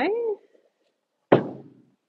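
A single sharp thunk as a wooden cabinet door is set down flat on a folding table, dying away over about half a second.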